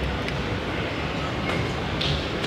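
Steady rumbling hum inside an OTIS traction elevator car, with a few faint clicks as the car button is pressed.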